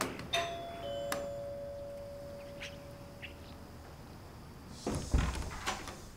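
A doorbell button is pressed with a click, and an electronic two-note ding-dong chime follows, higher note then lower, ringing out over about three seconds. Near the end a door latch clicks and a heavy wooden door thumps as it is pulled open.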